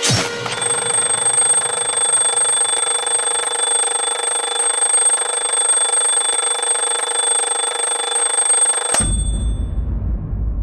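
Bedside alarm clock ringing continuously, a dense high-pitched bell, then cut off suddenly about nine seconds in as it is switched off.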